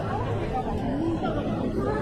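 Chatter of passers-by in a crowded pedestrian street: people talking over a steady background hum of street noise.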